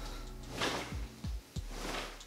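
Cotton karate gi rustling and swishing in a few quick surges as the arms and hips whip a broomstick back and forth, with some soft low thuds in between.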